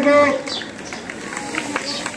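A man's voice announcing in Hindi ends a word about half a second in. Low outdoor background noise follows.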